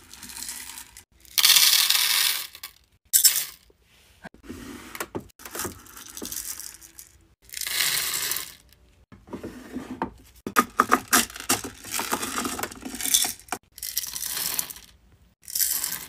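Hard wax beads being scooped and poured, small hard pellets rattling onto each other and into a metal wax-warmer pot. The pours come one after another, each lasting a second or so, with short pauses between.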